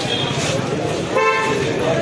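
A vehicle horn gives one short toot about a second in, over the chatter of a crowd on a busy street.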